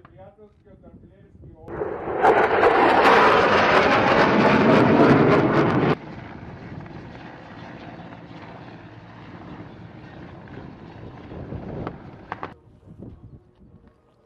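A loud aircraft roar for about four seconds that cuts off abruptly. Then a military transport helicopter flies by, its turbines and rotor running steadily and more quietly.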